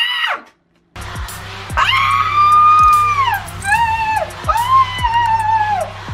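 A short yell, a brief hush, then a K-pop stage performance track with deep sliding bass drops comes in about a second in. Three long, high-pitched screams run over the music, each falling away at its end.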